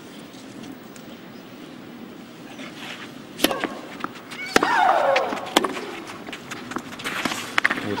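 Tennis rally on a clay court: sharp racket-on-ball hits about a second apart, starting after a hushed few seconds, with a player's long shriek falling in pitch on one shot about halfway through.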